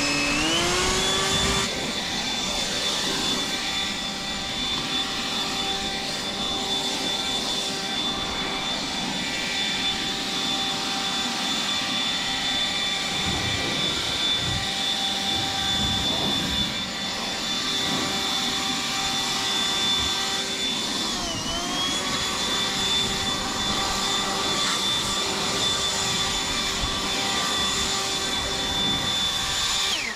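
Toro cordless handheld leaf blower spinning up, then running at full speed with a steady high whine and rush of air as it blows wet grass clippings off a mower deck. About 21 seconds in its pitch dips briefly and climbs back, and it stops right at the end.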